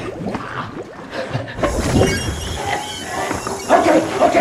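Film sound effects: the fragments of a shattered glass helmet scattering and tinkling. Then comes a creature's strained, gasping vocal sounds as it is left without its helmet.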